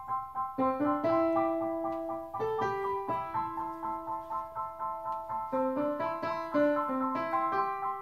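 Kawai KDP-110 digital piano playing back a MIDI piano part sent from the computer over USB, with no one at the keys: a continuous run of melody notes over chords, each note struck and decaying.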